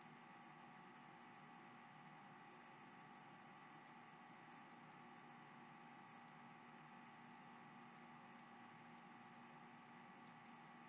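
Near silence: a steady faint electrical hum, with a few faint ticks in the second half.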